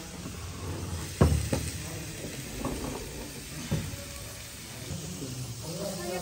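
A heavy wooden serving platter set down on a wooden restaurant table with a sharp knock about a second in, then a second knock and a few lighter clatters of serving utensils, over a steady low background hum.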